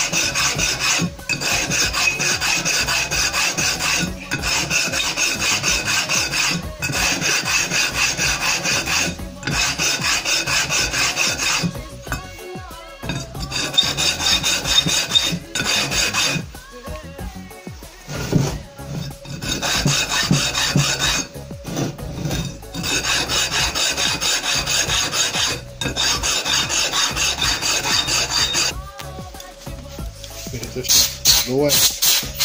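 Aluminium camshaft bearing cap of a VAZ-2108 8-valve head rubbed by hand back and forth across the flat face of an abrasive stone: a steady rasping scrape in long runs with short pauses and a longer break about halfway through. The cap's mating face is being lapped down in a criss-cross pattern so it seats lower for reaming the camshaft bed.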